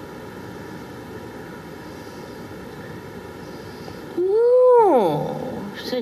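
A quiet, steady room hiss during a dramatic pause. Then, about four seconds in, a woman gives a long, loud vocal 'oooh' through pursed lips that rises slightly and then slides down in pitch.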